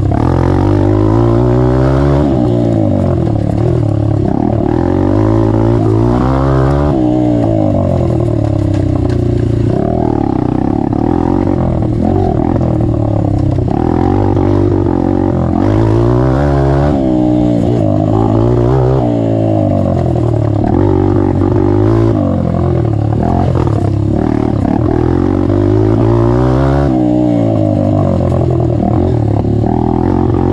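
Honda CRF150F four-stroke single-cylinder dirt bike engine, exhaust with the stock baffle removed, ridden hard. The engine revs up and falls back every couple of seconds as the throttle is worked through the trail's turns.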